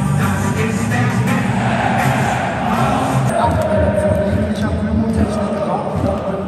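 Loud music played through a football stadium's public-address system, filling the arena, with the crowd in the stands beneath it.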